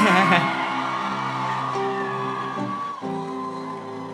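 Live band holding sustained keyboard chords that change to a new chord about three seconds in, with a man's laugh at the start.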